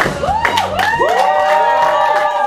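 Backing music stops early on, and people whoop with long rising-and-falling 'woo' calls and clap their hands.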